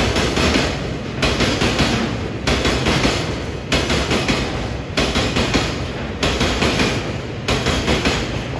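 Freight train of oil tank wagons passing, its steel wheels clattering over the rail joints. A burst of clacks comes about every second and a quarter as successive wagons' wheels cross the joint.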